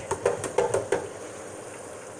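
Hot oil in an electric deep fryer sizzling around breaded salmon pieces, with several sharp clicks in the first second, then a steady hiss.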